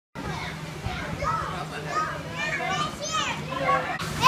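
Children playing, with overlapping high-pitched shouts and chatter, over a steady low hum.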